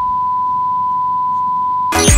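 A single steady electronic beep, one unbroken pitch held for about two seconds, sounding over an on-screen warning card and stopping just before the end.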